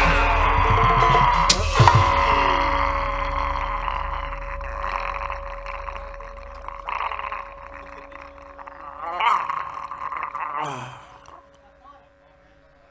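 Sundanese gamelan accompaniment for a wayang golek fight: sharp knocks near the start, then a long wavering high tone over held notes, fading away by the end.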